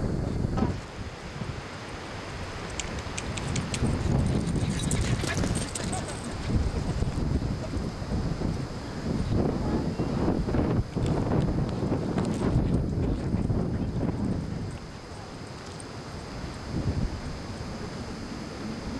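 Wind buffeting the camcorder microphone, a gusty low rumble that rises and falls, with a few sharp clicks of handling noise a few seconds in.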